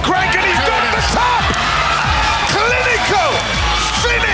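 Background music with a steady low bed, and excited shouting voices over it, strongest in the second half.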